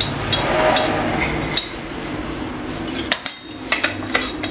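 Small metal clicks and clinks from a nut being threaded back onto a chainsaw's flywheel (magneto) shaft and tightened by hand, with handling noise around it. The clicks are scattered and come close together near the end.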